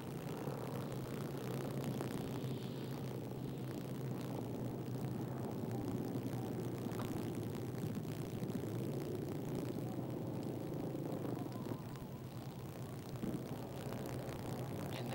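Steady drone of many vehicle engines running together as a pack of attacking cars circles.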